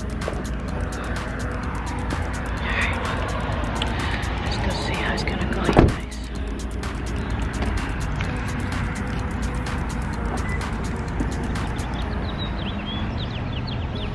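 Steady outdoor rumble with wind on the microphone, and a car door being shut once, loudly, about six seconds in.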